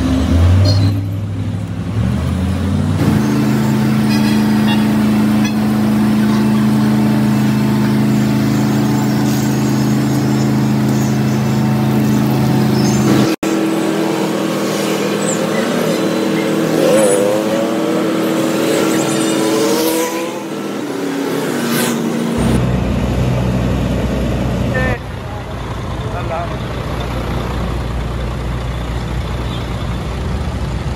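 Heavy diesel vehicle engines running steadily, with people's voices in the mix. The sound changes abruptly several times.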